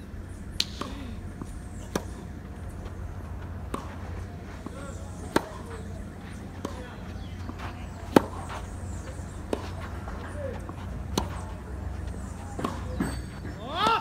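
Tennis rally: a ball being struck by rackets and bouncing on the court, sharp single pops about every one and a half seconds, the loudest about eight seconds in.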